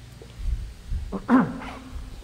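A man coughs: a faint catch, then one loud, harsh cough about halfway through, falling in pitch as it dies away.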